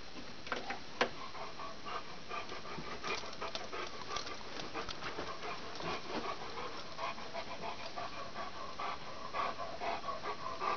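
An elderly dog panting in quick, even breaths, several a second. Two sharp knocks come about a second in.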